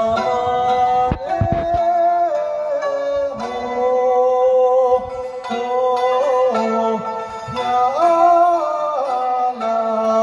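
Live Tibetan folk music through PA speakers: a dranyen (Tibetan lute) plucked, with a voice singing a gliding, ornamented melody over it.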